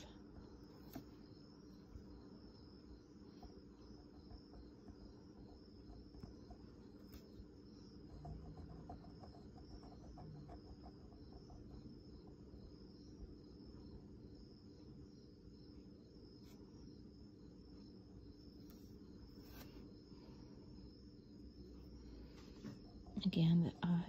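Near silence: room tone with a faint steady hum and a faint, evenly pulsing high chirp.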